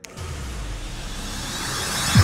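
A finger snap, then a whooshing riser sound effect with a low rumble underneath that swells steadily louder, building up a logo intro.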